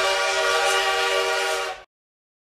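A steam train whistle sounding one long steady blast, several tones together over a breathy hiss, that stops abruptly near the end.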